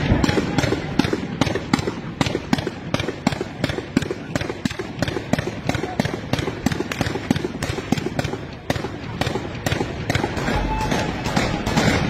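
Truck-mounted belt-fed heavy machine gun firing a long, sustained string of shots, about four to five a second, with hardly a break.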